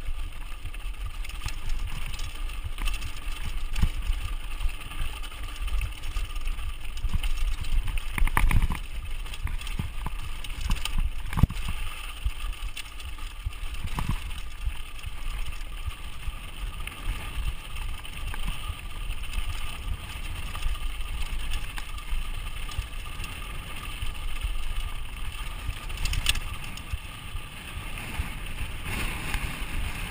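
A mountain bike descending a dirt singletrack: steady wind buffeting on the camera's microphone and rumble from the tyres and frame over the dirt. A few sharp knocks and rattles from the bike come over bumps, the loudest about eight to nine seconds in and again about eleven seconds in.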